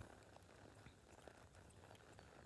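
Near silence, with faint soft footfalls of a horse walking on arena sand.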